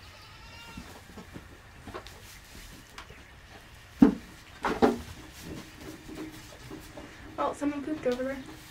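Nigerian dwarf goats bleating in a pen: a few short bleats, the clearest near the end, with a sharp knock about four seconds in.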